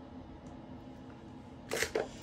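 Faint steady room hum while a beaded necklace is handled. Near the end comes a short, loud rustling clatter as the beaded stone-cross necklace is moved and set down.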